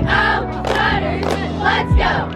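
A group of girls' voices shouting together over music with a deep bass beat, one bass thump falling near the end.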